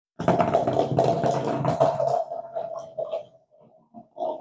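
Wound-up rubber-band paper-cup toy running across a hard floor: a rattling whir with a steady hum for about two seconds, then weakening into a few scattered knocks as it runs down.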